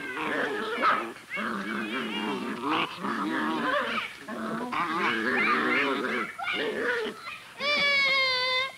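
Several young children shouting, squealing and whining as they play, their voices overlapping in short bouts. A long, steady, high-pitched wail starts near the end.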